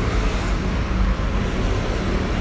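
Steady, even low hum of a vehicle engine running at idle.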